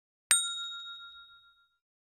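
A single bright chime sound effect, like a small bell struck once, that rings and fades over about a second and a half. It marks the red '+1' popping up on an animated 'like' button.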